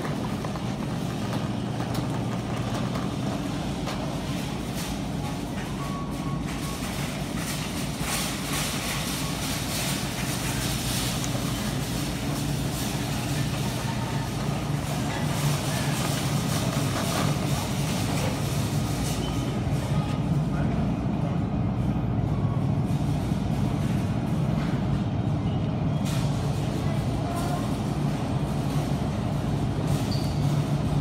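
Grocery store ambience: a steady low hum with faint voices and background music, growing a little louder about halfway through.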